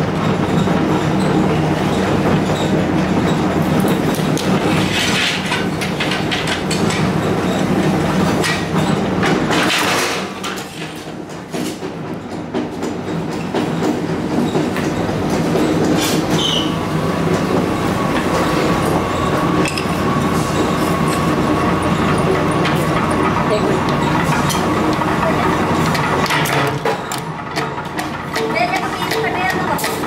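Heavy metalworking machine running with a loud steady drone and rattle, broken by a few sharp clanks; a thin steady whine joins in about halfway through.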